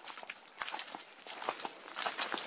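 Footsteps of people walking over dirt ground strewn with dry bamboo and leaves: irregular short crunches and scuffs.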